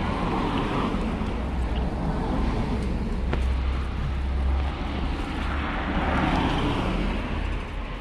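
Cars passing on the road close by, the sound swelling briefly near the start and again around six seconds in, over a steady low rumble.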